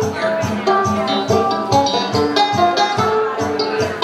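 Live swing band playing an instrumental passage: banjo and saxophone over an even beat of about three strokes a second.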